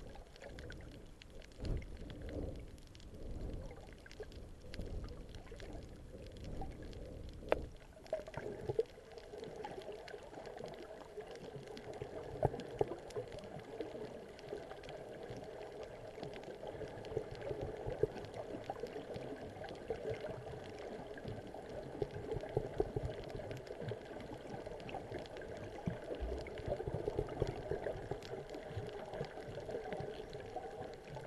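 Muffled sound of seawater heard through a submerged camera. Water rushes and gurgles in uneven surges for the first several seconds, then settles into a steady hiss scattered with faint crackling ticks.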